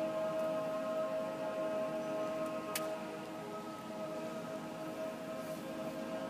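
Mixed choir singing, holding a long sustained chord on steady notes. A brief sharp click comes about three seconds in.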